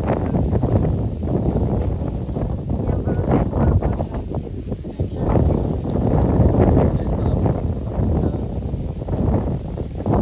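Wind buffeting the microphone: a loud, uneven low rumble that swells and drops.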